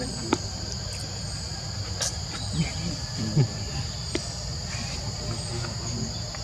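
Insects chirring in a steady, high-pitched drone, with a low rumble underneath. A few faint clicks, and a short low sound a little past the middle.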